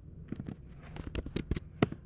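Typing on a computer keyboard: about ten quick keystrokes in two short runs, the last keystroke, near the end, the loudest.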